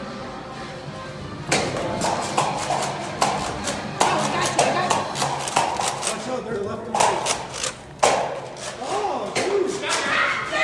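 Nerf foam-dart blasters firing and darts striking, a quick, irregular run of sharp clicks and snaps that starts about a second and a half in.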